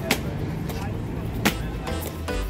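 Busy street sound with indistinct voices and passing traffic under background music, with two sharp clicks about a second and a half apart.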